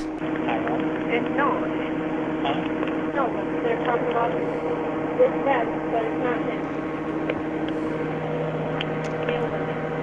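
Indistinct background murmuring of voices heard over a telephone line, with a steady hum underneath.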